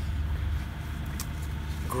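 A steady low rumble of background noise, with a faint click about a second in.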